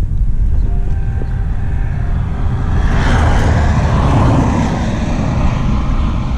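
Steady wind rush on the microphone of a moving bicycle. About two and a half seconds in, a motor vehicle overtakes close by: its engine and tyre noise swells to a peak near four seconds and fades away by about five and a half seconds.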